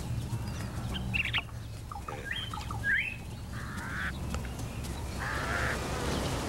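Birds calling in the open: a few short chirps that glide upward, then two trilled calls near the end, over a steady low rumble of outdoor ambience.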